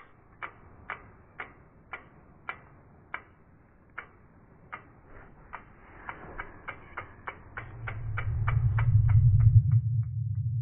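Logo-animation sound effects: a series of sharp ticks, about two a second at first, quickening to three or four a second. A low rumble swells under them over the last few seconds and is the loudest sound near the end.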